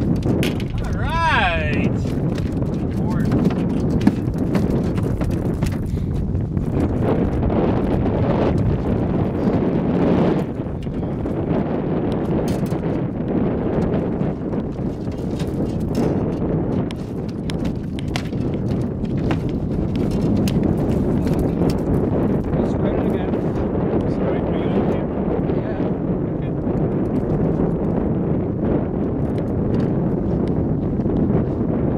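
Steady wind rumble on the microphone with scattered clicks and knocks from handling a netted lake trout and landing net in an aluminum boat. A short wavering whistle comes about a second in.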